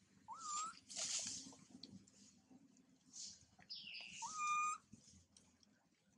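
Two short, high, whistle-like coo calls, each rising then holding steady, from a newborn macaque; the second, about four and a half seconds in, is the louder.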